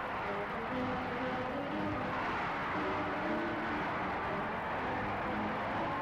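A huge street crowd cheering and shouting together in a continuous, steady roar.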